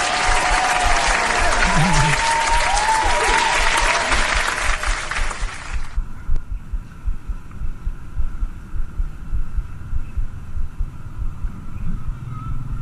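Applause sound effect, a crowd clapping, cut in sharply and stopping abruptly about six seconds in. After it there is only a low uneven rumble of wind on the microphone.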